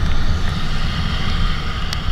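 A motorcycle riding on a wet road in the rain: a steady low rumble of wind and road noise with the engine underneath, muffled through the camera's waterproof housing.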